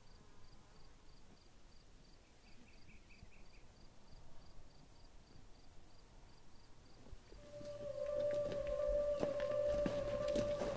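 Faint insect chirping at a steady rate of about four chirps a second, with a brief run of lower chirps a few seconds in. About seven seconds in, music enters with a held note that swells in loudness, joined by clicking.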